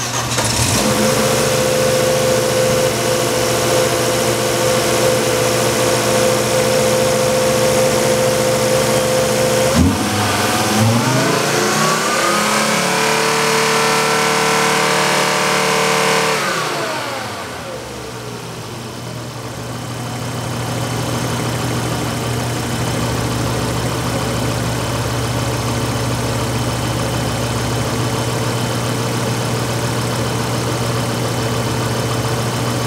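2005 Volvo V50's 2.4-litre non-turbo inline five-cylinder engine catches and runs at a fast idle. About ten seconds in it is revved up, held for a few seconds, then let fall back to a steady, lower idle. It sounds like a good runner.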